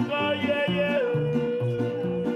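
Mexican mariachi-style song: a singer holds one long note from about a second in, over strummed guitars and a plucked bass line.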